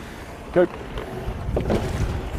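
Wind rumbling on the microphone over a rowing pair taking a stroke, with a splash of oar blades near the end as they enter the water at the catch.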